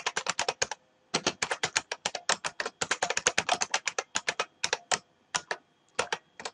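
Fast typing on a computer keyboard: a short run of keystrokes, a brief pause just before a second in, then a long quick burst of keys that thins out to a few scattered taps near the end.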